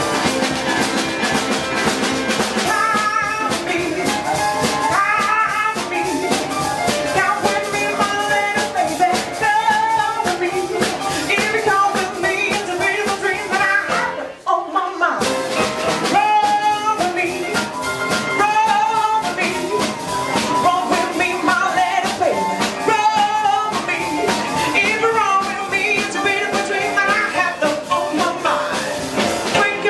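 A live rock and roll band playing an upbeat number, with an upright piano and drums. The music stops short for about a second halfway through, then the band comes back in.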